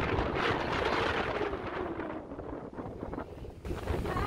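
Wind buffeting the microphone: a steady, rumbling noise.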